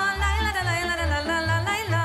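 Woman singing a Romanian folk song with a wavering vibrato, over a band accompaniment with a steady bass beat.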